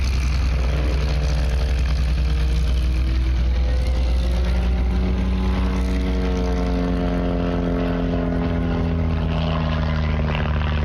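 Propeller-driven aerobatic light aircraft flying a smoke-trailing display, its piston engine droning steadily with a heavy low rumble. The engine note slowly rises and falls as the aircraft manoeuvres, most clearly in the second half.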